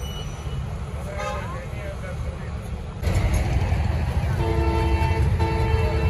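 Roadside traffic noise with vehicle horns sounding. About halfway it jumps suddenly to a much louder low rumble, and near the end held musical tones come in over it.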